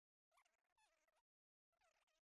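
Near silence: the narration has stopped and nothing audible is heard.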